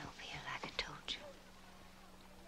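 A woman's soft whispered speech with hissing sibilants in the first second or so, then faint quiet over a low steady hum.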